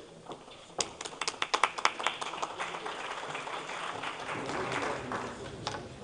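A few people clapping in a large council chamber: scattered handclaps start about a second in and merge into a short round of applause mixed with murmuring voices, dying away near the end.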